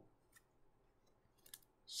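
Near silence with a few faint clicks as plastic penny-sleeved baseball cards are shifted in the hands.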